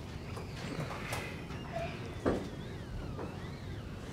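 Eraser being wiped across a board to clear the writing: soft rubbing with a few high squeaks that rise and fall in pitch, and one short knock a little past halfway.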